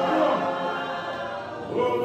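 Choir singing a processional hymn a cappella; the phrase softens through the middle and the next phrase starts near the end.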